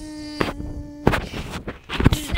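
A steady buzzing tone held on one pitch for about a second, cut off by a sharp knock, then scattered knocks and rustling of the camera being handled.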